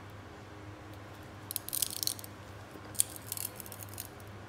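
Tin cry: a bar of pure tin being bent, its crystals inside crackling. The sound comes as faint, crisp crackles in two short spells, about a second and a half in and again around three seconds in.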